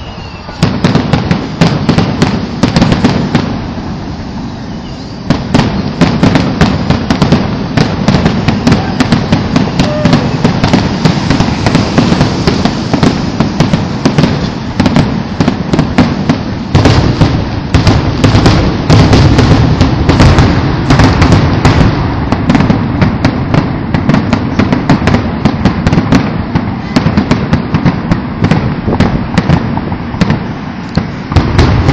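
Fireworks going off in a dense, near-continuous barrage of sharp cracks and bangs, with a short lull about four seconds in.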